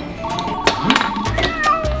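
A phone ringing tone beeps for about a second, then a cat meows near the end, over background music.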